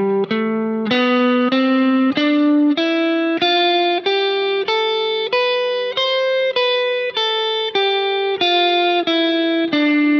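Fender Stratocaster electric guitar playing a major scale one picked note at a time, about a note and a half per second. The notes climb in pitch to a peak about six seconds in, then come back down.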